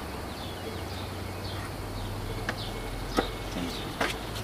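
Faint, brief bird chirps over a low steady outdoor rumble, with two light clicks in the second half.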